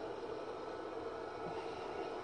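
Steady faint hum and hiss of background machinery, with no distinct events.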